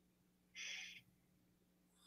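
Near silence: room tone with a faint steady low hum, and one brief soft hiss about half a second in.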